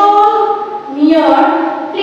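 A singing voice holding long notes, in two phrases of about a second each; the second begins about a second in.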